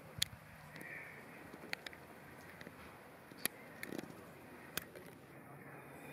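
European robin giving a few short, sharp tick calls, spaced a second or more apart, over faint background hiss.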